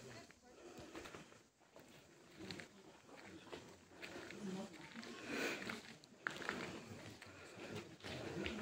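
Faint, indistinct voices of people talking quietly in the background, too low to make out words.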